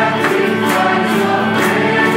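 Choral music: a choir singing held, sustained chords.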